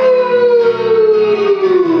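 A man imitating a wolf's howl: one long 'owoo' sliding down in pitch, over a guitar backing.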